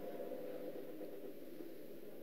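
Faint room tone with a low, even hiss between sentences of speech; no distinct sound.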